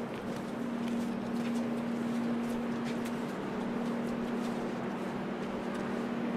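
Steady machinery drone holding one constant low hum, with light footsteps on a deck.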